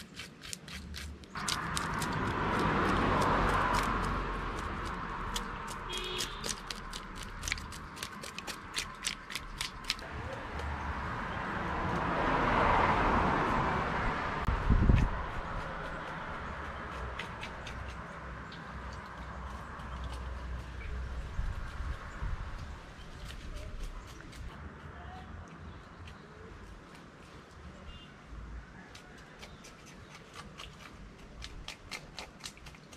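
Knife scraping the scales off a yellowtail snapper in quick rasping strokes, densest over the first third and then thinning out. Two slow swells of rushing noise rise and fade, one early and one about halfway, with a dull thump soon after the second.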